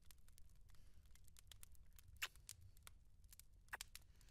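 Near silence: faint room tone with scattered small clicks, and two sharper brief ticks, about two seconds in and near the end.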